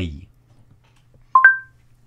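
Google Home smart speaker playing a short two-note rising chime, a lower tone followed at once by a higher one, acknowledging a spoken 'Hey Google' command just before the assistant replies.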